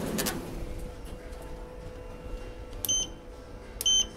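Schindler lift car-panel call button beeping twice, short high beeps about a second apart, as floor buttons are pressed. A steady hum runs underneath, and there is a brief rumble of handling noise at the start.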